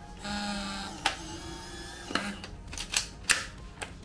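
Polaroid Lab instant printer's motor whirring briefly as it drives an exposed instant film out through its rollers, then a lower steady hum and several sharp mechanical clicks.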